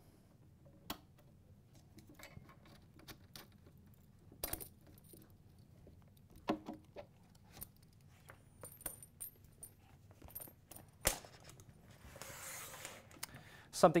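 Handling noise as a TIG torch's quick-connect fittings and cable are unplugged from a welding machine: scattered light clicks and knocks of metal and plastic parts, with a short stretch of cable rubbing near the end.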